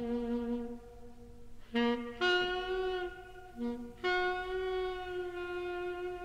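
Alto saxophone in a slow jazz ballad, playing a few short notes and then long held tones, the last held about three seconds, over very sparse accompaniment.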